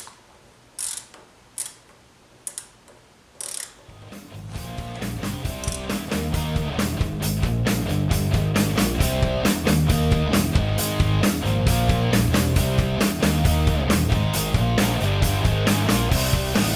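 A socket ratchet clicking in short bursts, about one a second, over the first few seconds. Background music then fades in at about four seconds and becomes the loudest sound.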